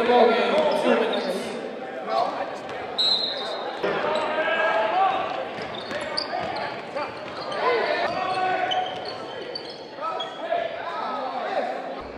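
Indoor basketball game sound: a ball bouncing on the hardwood court under the voices of players and spectators, echoing in the gym.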